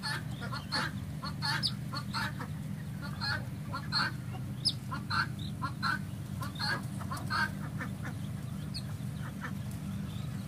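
A flock of young pheasants calling: many short chirping calls overlapping, thick for most of the time and thinning out near the end, over a steady low hum.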